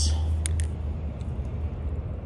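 Steady low drone of an idling engine, with a couple of light clicks about half a second in.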